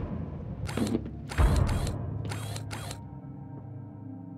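Trailer sound design: five short clicking, clattering sound-effect bursts over a low music drone, with a deep hit about a second and a half in. Held ambient music tones take over after about three seconds.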